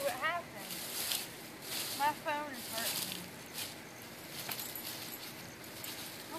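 Dry fallen leaves rustling and crunching in scattered short crackles under a Yorkshire terrier puppy's paws and a person's feet, with a faint voice near the start and again about two seconds in.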